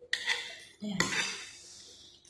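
Tableware clattering on a plate: two sharp clinks about a second apart, each trailing off briefly.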